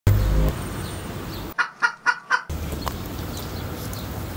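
Four quick chicken clucks, about four a second, dropped in as a sound effect: the street noise cuts out under them. A brief loud low rumble at the very start, then faint street noise.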